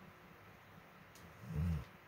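Near-quiet room with one short, low hum of a person's voice, a hesitant "hmm", about one and a half seconds in, and a faint click just before it.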